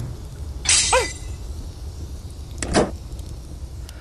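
Two sharp impact sound effects about two seconds apart over a steady low rumble; the first, about a second in, is the loudest and carries a brief ringing tone.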